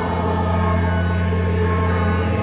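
Church organ music with held chords: a low bass note changes at the start and is held for about two seconds under steady upper notes.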